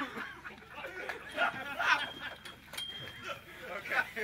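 Several people chatting casually, with bits of laughter.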